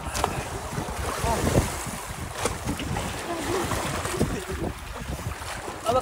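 Rough sea water sloshing and splashing around an outrigger boat's hull and bamboo outrigger, with wind buffeting the microphone and faint voices in the background.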